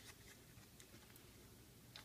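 Near silence: room tone, with a faint tick near the end.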